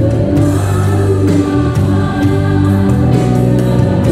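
Live worship band playing a gospel song: voices singing over keyboards, bass guitar and drum kit, with regular drum hits.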